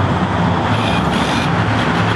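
Steady road traffic noise, with the low hum of a vehicle engine running close by.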